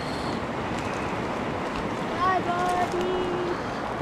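Steady rush of a shallow stream flowing, with a few faint short pitched sounds a little past halfway.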